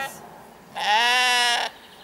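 Sheep bleating: a single steady call about a second long, starting near the middle.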